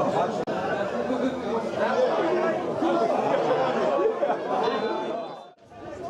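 Indistinct chatter of several people talking at once around the pitch, with no single clear voice. It drops out briefly near the end.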